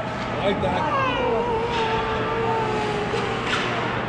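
A voice at a youth ice hockey game holds one long call of nearly three seconds that slowly falls in pitch, over the steady din of the rink. Two short sharp sounds from the play on the ice come about two and three and a half seconds in.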